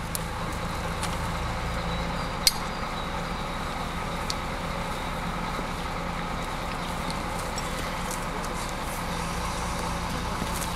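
Steady low engine hum, typical of the mobile crane's diesel engine running, with one sharp click about two and a half seconds in.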